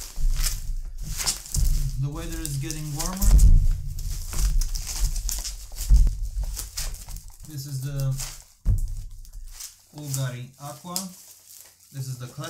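Plastic bubble wrap crinkling and crackling as it is pulled off a box by hand, with two dull thumps of handling about three and a half and six seconds in.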